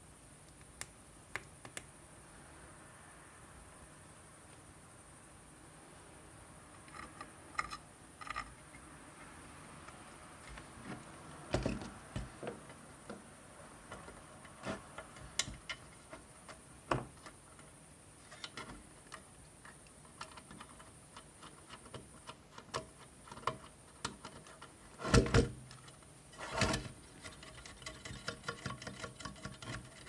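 Scattered clicks, taps and knocks of hands handling an ATX power supply's metal case and small plastic parts on a workbench, the loudest two clusters of knocks about 25 and 27 seconds in, followed near the end by a quick run of small clicks.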